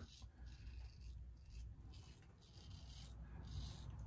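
A double-edge safety razor blade, a Gillette Heritage, scraping through beard stubble under shaving cream in several faint strokes. This is a cross-grain pass.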